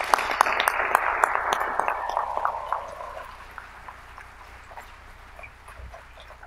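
Audience applauding, the clapping dying away about three seconds in to faint room noise.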